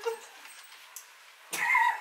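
A woman's short, high-pitched playful squeal near the end, with a wavering pitch, as she is grabbed in a mock tussle.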